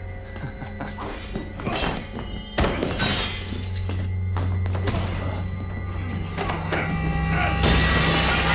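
Dramatic film score with a low droning bass under fight sound effects: several heavy thuds and knocks, then glass shattering loudly near the end as a body crashes out through a window.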